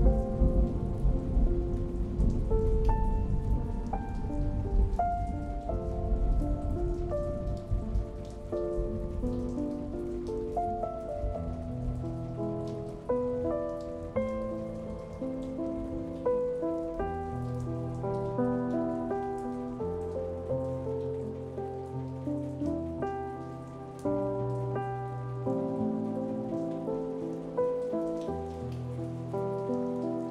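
Slow, gentle solo piano music over a steady recording of rain pattering. A low rumble of distant thunder is loudest at the start and fades away over the first ten seconds or so.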